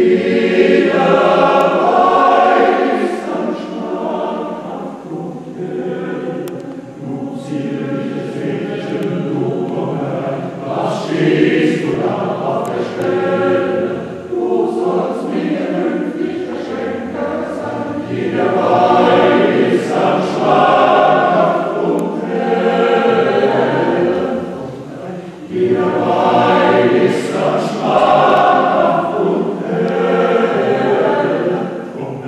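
Men's choir singing in sustained phrases that swell and ease, with a short break about 25 seconds in before the voices come back in louder.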